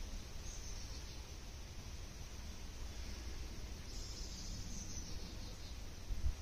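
Quiet outdoor background: a steady low rumble with a faint hiss over it.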